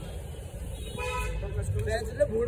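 A vehicle horn honks once briefly, about a second in, over the low rumble of street traffic.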